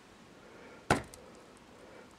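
A single short, sharp knock about a second in, against a quiet room background.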